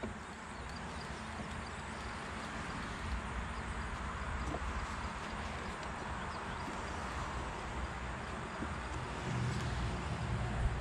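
Steady hum of honeybees around an opened hive, with a low rumble on the microphone that grows near the end and a faint click about halfway through.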